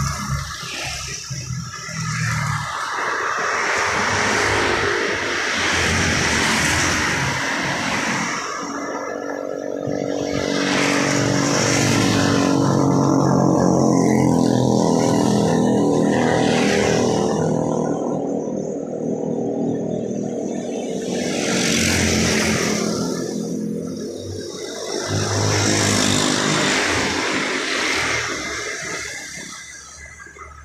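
Street traffic passing one vehicle after another: motorcycle and car engines with tyre hiss swell and fade as each goes by. A steady engine hum runs through the middle stretch.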